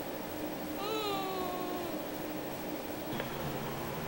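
A small pet's single drawn-out cry, about a second long and falling slightly in pitch, over a steady low hum, with a short click near the end.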